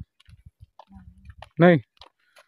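Faint, scattered clicks and scuffs, then a voice saying a short "no, no" near the end.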